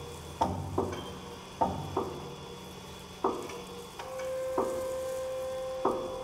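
Sparse contemporary chamber music for pianos and percussion: seven separate struck notes, each ringing briefly, spaced unevenly about half a second to a second and a half apart. A steady held tone comes in about four seconds in and sustains under the strikes.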